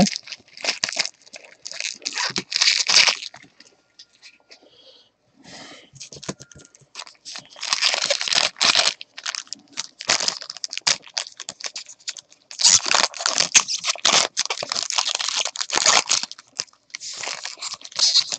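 Foil trading-card pack wrapper crinkling and tearing in irregular bursts, with stiff plastic card holders being handled.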